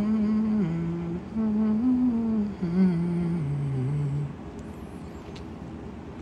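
A man humming a short tune with closed lips: a string of held notes that step up and down and end lower, stopping about four seconds in.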